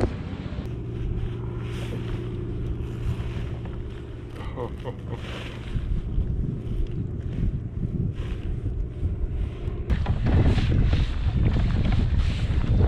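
Wind buffeting the microphone on open water, over a steady low hum for most of the stretch. The hum stops abruptly about ten seconds in, and the wind rumble then grows louder.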